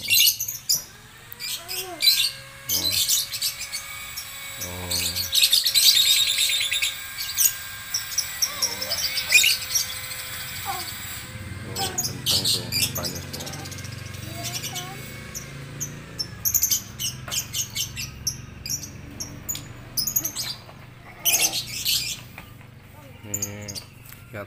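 Caged lovebirds chattering and chirping in shrill, rapid runs, the longest and loudest run about four to seven seconds in, with more runs near the middle and toward the end.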